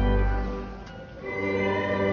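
Church organ playing held hymn chords with choral singing; the chord fades away about half a second in and a new chord comes in about a second and a quarter in.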